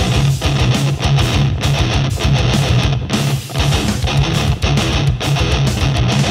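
Ibanez RGMS7 seven-string multi-scale electric guitar played with heavy distortion: a fast, rhythmic metal riff pulsing on the low strings.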